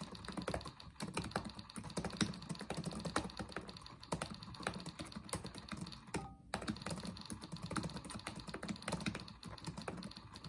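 Fast, continuous touch-typing on an Acer laptop keyboard, keys clicking in a rapid, uneven patter at about 100 words per minute, with a brief pause about six seconds in.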